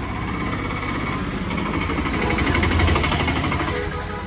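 A fast, rattling mechanical sound from a motor or machine, growing louder to about three seconds in and then easing off.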